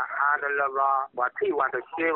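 Only speech: a newsreader talking steadily in Karen, with the narrow, thin sound of radio audio.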